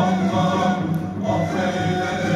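Sufi sema music: a male choir singing a slow devotional hymn together, with a steady low instrumental accompaniment underneath.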